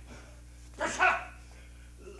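A single short, loud shouted cry from a man, about a second in, with quiet room tone around it.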